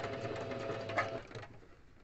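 Electric sewing machine running steadily as it stitches a seam, then stopping a little over a second in, with a click just before it stops.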